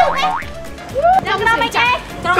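Edited-in cartoon boing sound effects, two arching pitch glides, one at the start and one about a second in, over background music with people's voices.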